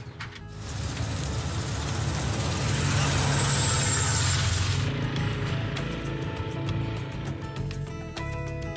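A motor vehicle passing close by: the engine and road noise build up, are loudest around three to four seconds in, then fade. Background music comes in from about five seconds.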